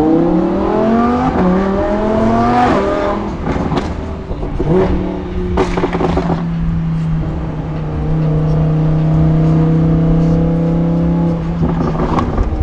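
Lamborghini engine heard from inside the cabin, revs climbing steeply under acceleration and stepping down with two quick upshifts. A few sharp cracks follow, then the engine settles into a steady drone at constant speed.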